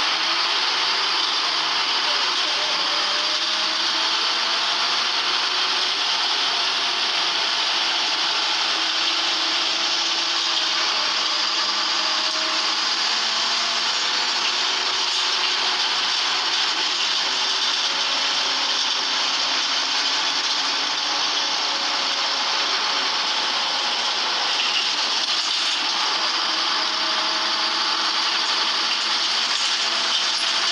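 Volvo bus with Wright body heard from inside the saloon while under way: a steady drone of engine, drivetrain and road noise with a heavy hiss. Faint tones in it slowly rise and fall as the speed changes.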